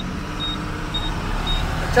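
Steady low engine and road rumble inside a moving truck's cab, with a short high beep repeating about twice a second.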